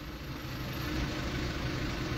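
Low steady vehicle rumble heard from inside a car cabin, swelling slightly about a second in.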